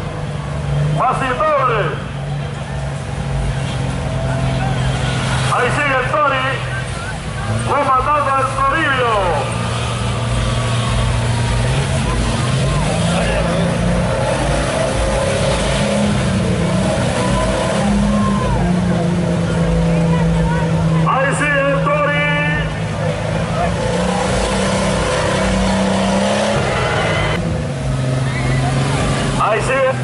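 Off-road 4x4's engine running hard at high revs while it churns through deep mud. Its pitch holds steady, then steps up and down as the throttle changes.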